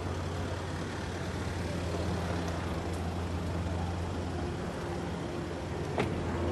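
Car engine idling, a steady low hum, under outdoor background noise.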